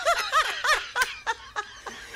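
A man laughing hard, a run of 'ha' pulses about three a second that trail off near the end.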